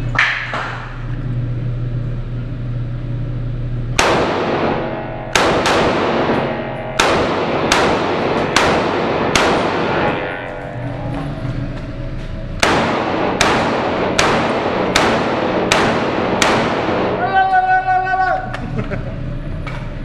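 Stock WASR-10 AK-47 rifle (7.62×39 mm) firing two quick strings of shots in a concrete-walled indoor range bay, each shot ringing off the walls. The first string starts about four seconds in, then there is a pause of about three seconds before the second string.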